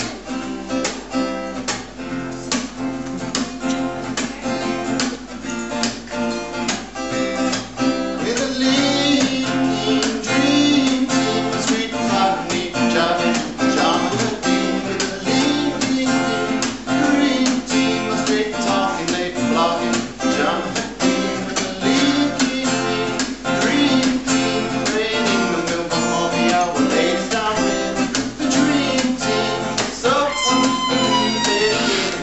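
Acoustic guitar strummed in a steady, even rhythm, chords ringing between the strokes.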